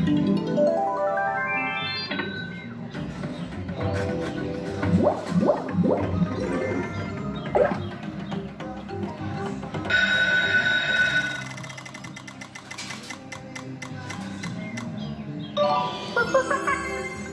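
Fruit machine's electronic game music and sound effects during a bonus feature: a quick rising run of notes at the start, jingling tones, a held bright electronic tone about ten seconds in, then a burst of rapid ticks.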